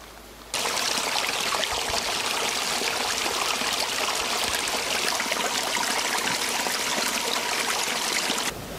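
Small, shallow woodland stream trickling and splashing steadily over a low step in its bed. It starts abruptly about half a second in.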